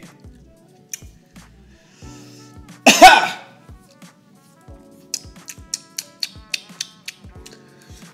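A man gives one loud, harsh cough about three seconds in, reacting to the burn of cask-strength whisky he has just sipped. Quiet background music runs underneath, with a run of short clicks in the last few seconds.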